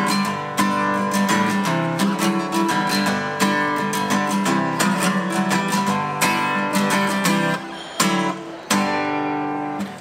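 Steel-string acoustic guitar strummed solo in a steady rhythm of chords, with two brief stops about eight seconds in.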